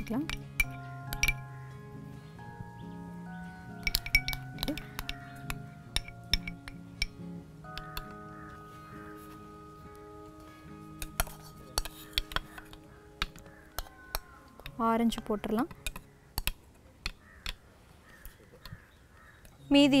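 A spoon clinking and scraping against a stemmed glass and the bowls as dessert layers are spooned in, in quick irregular taps, over soft background music with long held notes.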